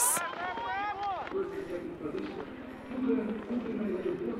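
Indistinct voices, not the commentary, with louder, higher calls in about the first second, then quieter talking.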